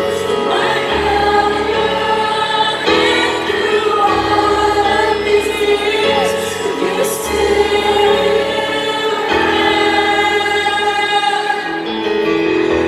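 A woman singing into a microphone while playing a grand piano in a live concert, with sustained piano chords that change every couple of seconds under the sung melody.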